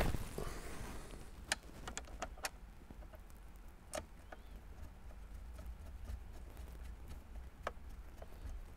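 Faint, scattered clicks and small taps of a magnetic Phillips screwdriver turning small screws that fasten a car stereo's touchscreen to its dash-kit mount, over a low steady hum.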